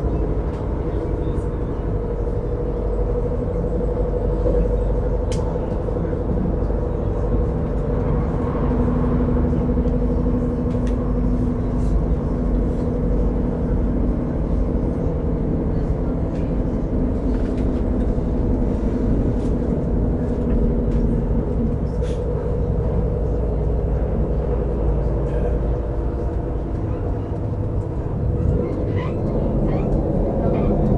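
Commuter train running at speed, heard from inside the carriage: a steady rumble of wheels on rails with a droning hum from the drive, and a few short clicks.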